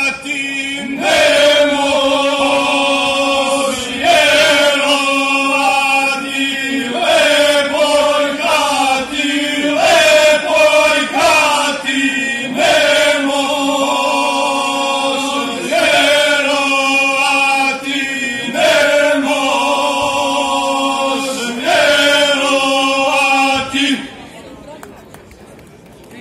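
Male folk singing group singing a traditional Serbian song unaccompanied, a steady low drone held under the lead melody, in phrases of about three seconds with short breaks for breath.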